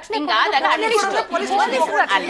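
Speech only: several voices talking over one another in a heated exchange.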